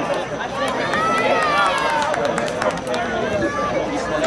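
Shouts and calls from players and spectators at an outdoor soccer match, including one long drawn-out shout about a second in.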